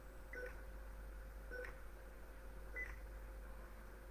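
Faint short electronic beeps, three of them a little over a second apart, over a steady low hum.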